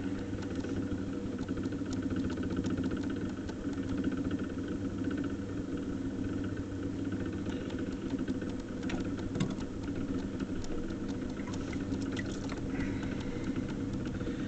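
Electric potter's wheel running at a steady speed, its motor giving a constant hum. A few faint taps come near the middle.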